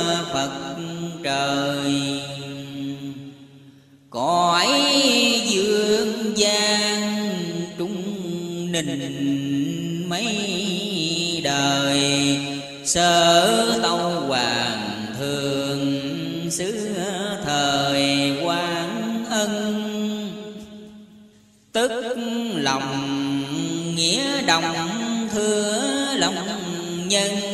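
A voice chanting Vietnamese verse in a slow, drawn-out melodic recitation, with long held and gliding notes. It trails off about four seconds in and again near the end, each time coming straight back in.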